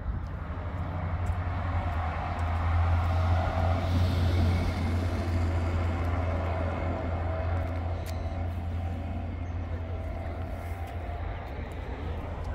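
Steady low rumble of motor traffic, swelling louder for a couple of seconds around four seconds in.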